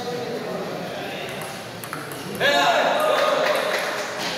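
Table tennis ball clicking off paddles and table during a rally. About halfway through, loud voices break in as the point ends.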